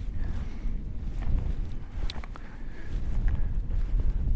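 Wind buffeting the microphone in a steady low rumble, with a few faint footsteps through moorland grass.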